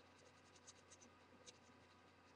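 Faint scratching of a pen on paper in short, quick strokes as a doodle pattern is coloured in.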